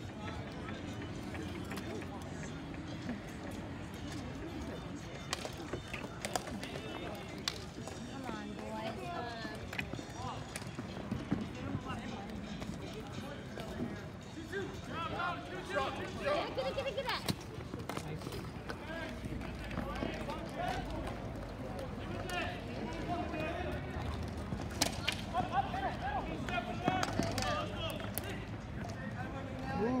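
Indistinct voices of players and spectators talking and calling out over an outdoor ball hockey game, with scattered sharp clacks from sticks and the ball in play.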